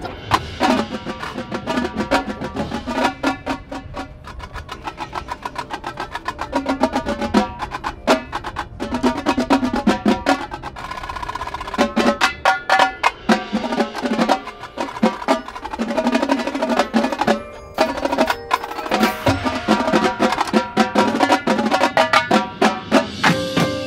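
Marching tenor drums (five- and six-drum quint sets) and bass drums playing a fast, loud rhythmic exercise: rapid stick strokes moving across the pitched drum heads, in long phrases with brief lulls between them.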